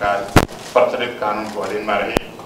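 A man's voice reciting an oath in Nepali into a microphone, with one sharp knock about half a second in, louder than the voice.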